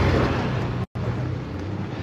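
Steady low rumbling background noise on a phone microphone, broken by a brief complete dropout just before a second in.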